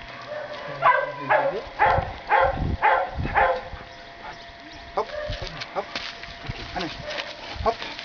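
A dog barking, about six short barks at about two a second, then quieter short sounds.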